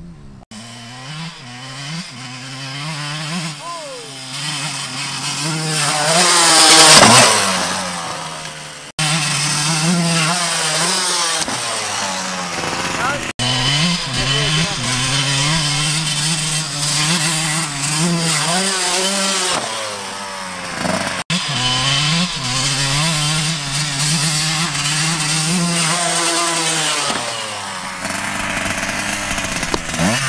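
Dirt bike engine revving as the bike rides around the field, growing louder to a loud close pass about seven seconds in, then running and revving up and down steadily, with a few abrupt breaks.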